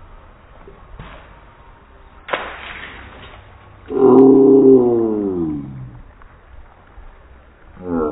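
A thrown water balloon bursts with a sharp smack and a splash about two seconds in. A loud, long wordless yell follows, falling in pitch.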